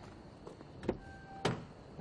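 A car door being opened from outside: two sharp clicks of the handle and latch about half a second apart in the second half, with a faint steady tone starting about halfway through.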